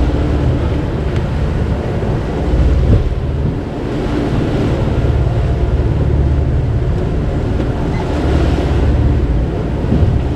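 Wind buffeting the microphone over the steady rush of water along the hull of a sailboat under way.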